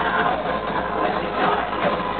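Loud live electro-industrial music playing through a concert PA, dense and unbroken.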